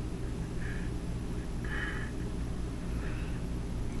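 A steady low mechanical hum, with three faint, brief higher sounds about a second apart.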